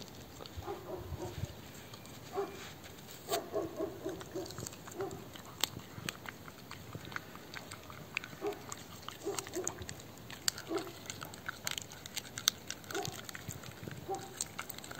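A dog growling in short, repeated bursts, interrupted by a few sharp clicks, while it stands over its raw beef brisket bone with teeth bared, guarding its food.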